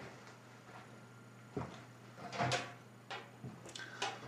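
A few faint, short knocks and clunks of things being handled, spread over the second half, the one about two and a half seconds in a little longer than the others.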